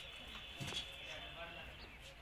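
Goats feeding at a stone trough: a few sharp knocks and scuffs as they eat, with faint voices in the background.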